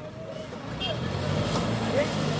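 A heavy vehicle's diesel engine running with a steady low hum that grows louder about a second in, with voices faintly around it.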